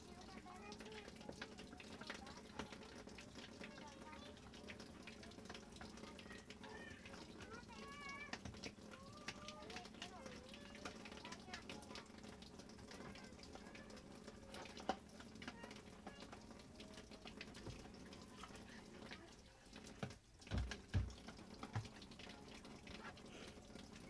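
Faint scrubbing with a small toothbrush in shallow water at the bottom of a washing machine tub, with light sloshing and dripping. A few soft low thumps come about 20 seconds in.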